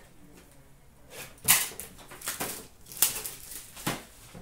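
Handling noise from sealed card boxes and a metal tin: a few sharp knocks and scrapes as they are picked up and moved, after a quiet first second.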